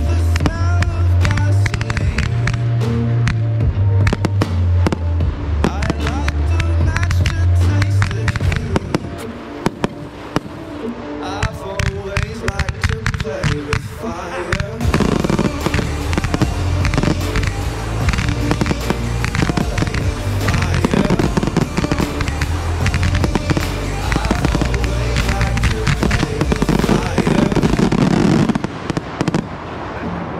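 Close-proximity pyrotechnics firing in rapid, dense strings of shots and crackles over a pyromusical soundtrack with a heavy bass line. The bass drops out for a few seconds in the middle, then the music and a denser barrage return about halfway through.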